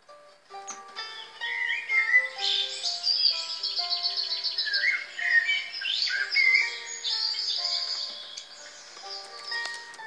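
Eurasian blackbird song, with gliding fluted whistles and fast high twittering trills, loudest in the first half, over background music with held notes.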